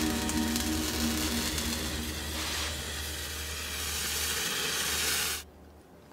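A steady hissing noise over a low hum, which cuts off suddenly about five and a half seconds in.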